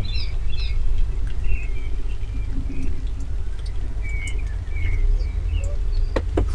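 Small birds chirping in short, scattered calls over a steady low rumble.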